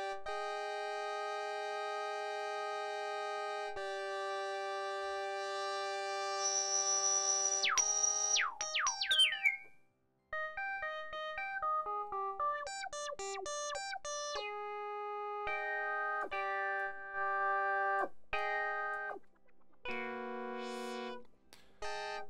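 A four-voice polyphonic synthesizer patched on an Axoloti board plays held chords for the first several seconds, then a cluster of notes sweeps steeply down in pitch. After a brief gap comes a run of short notes and chords. A slow random modulation on pitch and filter cutoff gives the oscillators a slight instability.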